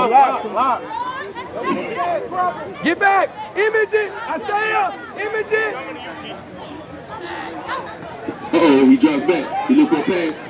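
Several sideline voices talking and calling out over one another, with louder shouting starting about eight and a half seconds in.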